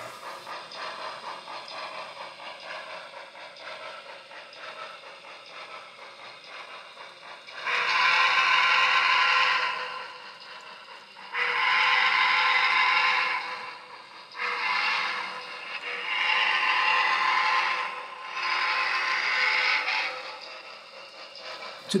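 Steam locomotive whistle from a sound-equipped HO scale model steam engine, blown as a grade-crossing signal: two long blasts, a short one, then two more long ones. A quieter steady running sound comes before the whistle.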